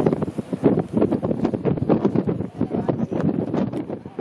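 Wind buffeting the microphone over the rush and splash of Strokkur geyser's water falling back and surging in its pool just after an eruption.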